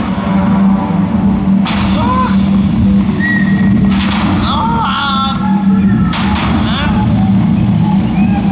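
Show soundtrack from loudspeakers at a night water-screen and laser show: voices over music, with a steady low drone. Three short, loud bursts of noise break in about two seconds apart.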